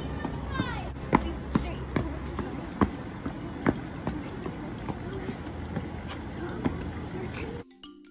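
Sneakered feet of a child hopping on a concrete sidewalk through a hopscotch grid: a series of sharp landing thuds, roughly two a second, at an uneven pace.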